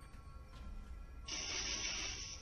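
A harsh scratching noise recorded by a driveway security camera's microphone, cutting in suddenly about a second and a half in, over faint background music.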